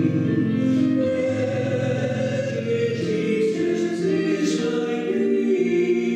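A man and a woman singing a sacred duet in held, sustained notes, accompanied by pipe organ.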